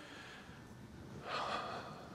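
A man's short, soft intake of breath close to the microphone, about one and a half seconds in, over faint room tone.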